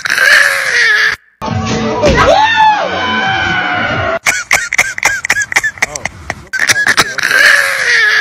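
Soundtrack of a short phone reel playing: music with a voice yelling or screaming over it and sharp clicks. It cuts out briefly about a second in, and the clip starts over near the end.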